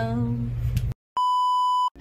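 A song with a held sung note ends about a second in, and after a brief silence a single steady electronic beep sounds for under a second and cuts off sharply.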